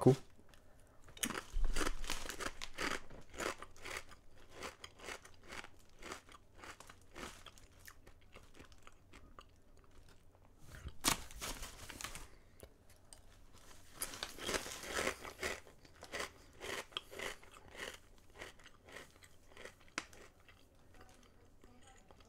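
A person biting and chewing Lay's Oven Baked potato chips: a run of crisp crunches about a second in, then slower, scattered chewing crackles, a single sharp crunch near the middle and another dense run of crunching later.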